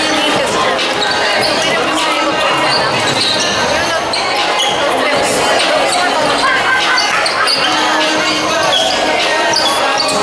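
Busy basketball hall with several games going at once: basketballs bouncing, sneakers squeaking on the court and many people talking over one another, a steady din without pauses.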